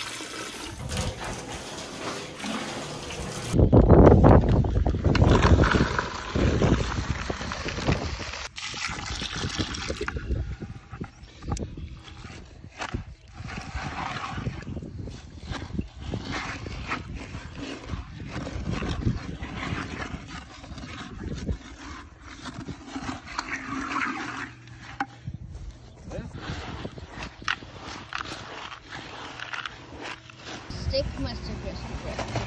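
Tap water running into a plastic jug for about three and a half seconds, then a cut to outdoor handling noise with irregular knocks, loudest from about four to seven seconds in.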